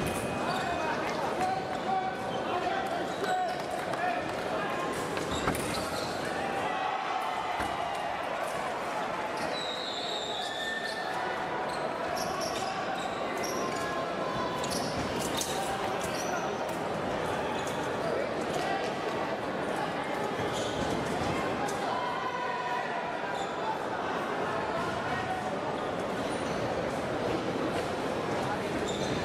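Fencing hall sound: a steady hubbub of many voices echoing in a large hall, with scattered thuds and sharp knocks from the fencers' footwork on the piste.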